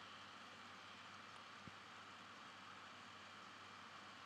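Near silence: faint steady room tone and microphone hiss, with one tiny click about a second and a half in.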